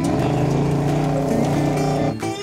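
1970 Dodge Challenger R/T's V8 engine running as the car drives, a steady exhaust note that cuts in and out abruptly.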